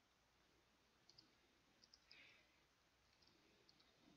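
Near silence with a few faint, scattered computer keyboard clicks.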